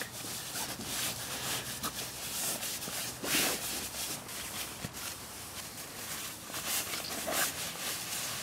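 Sleeping bag fabric rustling and rubbing as the bag is rolled up tightly by hand, with a louder swish about three seconds in.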